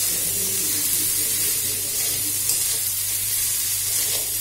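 Potato-and-pea samosa filling sizzling in hot oil in a metal kadai over a high flame as a spatula stirs it: a steady hiss, with a steady low hum underneath.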